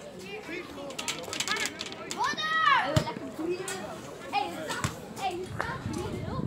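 Players' voices calling and shouting across an outdoor football pitch, one long high call rising and falling about two and a half seconds in, with a sharp knock just after it.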